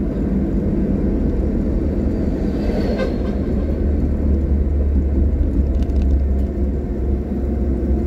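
Steady low engine and road rumble heard from inside a moving car's cabin as it drives along a paved road.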